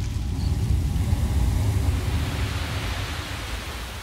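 Sea waves breaking against rock: a deep rumble with a rushing wash that swells over the first second or so and then slowly eases off.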